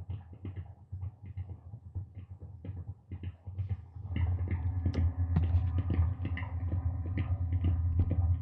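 Self-generating electronic feedback drone: headphone feedback fed through a mixer and a chain of guitar effects pedals (pitch shifter, pitch bender, slow tremolo, bass distortion). It is a low pulsing hum with flickering high chirps, and it grows louder and fuller, with more tones, about four seconds in.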